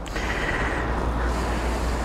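A motor vehicle running nearby: a steady engine rumble and road noise that swells in at the start and holds.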